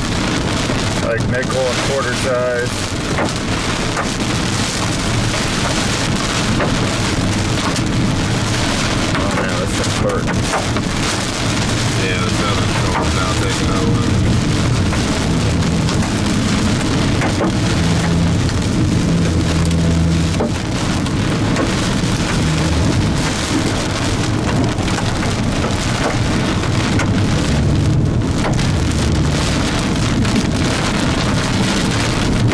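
Heavy rain pelting the roof and windshield of a moving car, a steady dense hiss with a low rumble underneath.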